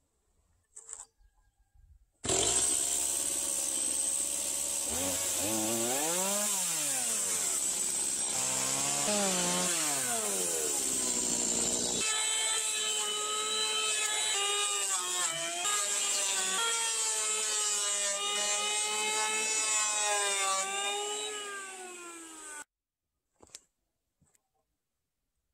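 Electric hand planer running and shaving a wooden beam. The motor pitch sags and recovers as the blades bite. It starts about two seconds in and stops shortly before the end.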